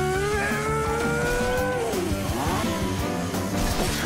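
A remote-control toy car's motor revving: its pitch rises steadily for about two seconds, then drops away as the car swerves.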